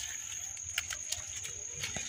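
Quiet field ambience dominated by a steady, high-pitched insect drone, with a few faint clicks and a low rumble underneath.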